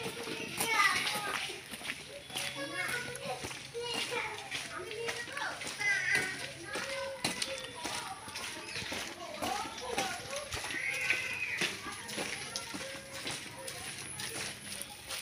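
Children's voices calling and chattering in no clear words, coming and going throughout.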